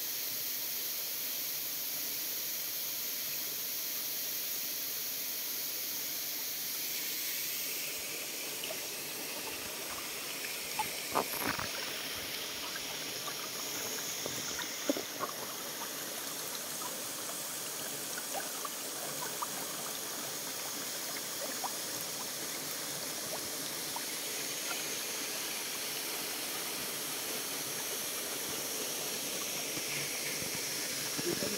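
Shallow creek water trickling over stones close by. An even hiss fills the first several seconds; from about eight seconds in, scattered small splashes and drips sound over the flow.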